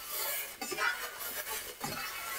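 Spatula scraping and stirring scrambled eggs across the bottom of a hot cast iron skillet, in several short strokes.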